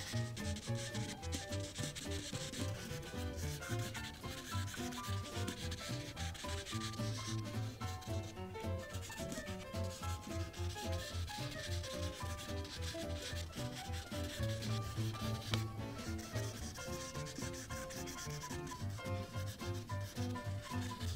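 A Prismacolor marker's broad tip rubbing back and forth on paper, a steady scratchy scrubbing as a large background area is filled in with colour.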